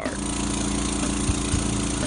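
Petrol lawn mower engine running at a steady speed, an even drone.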